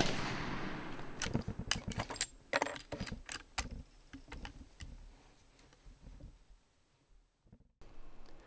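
Marlin 336 lever-action .30-30 rifle: the echo of a shot dies away, then about a second in comes a quick run of sharp metallic clicks and clacks lasting a couple of seconds, the lever being worked to eject the spent case and chamber the next round.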